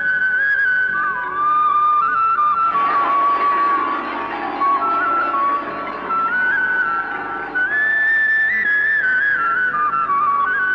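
Background film score: a slow, plaintive melody on a flute over a soft accompaniment, which swells fuller about three seconds in and then thins again.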